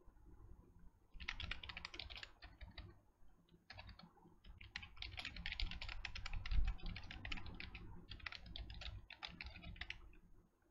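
Typing on a computer keyboard: quick runs of keystrokes, starting about a second in, with short pauses between the runs.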